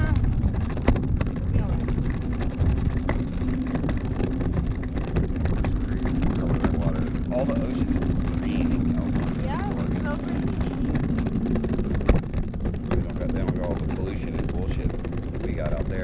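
Wind rushing over the microphone of a parasail camera, with a steady low hum that is plausibly the tow boat's engine below, strongest through the middle, and a couple of sharp knocks.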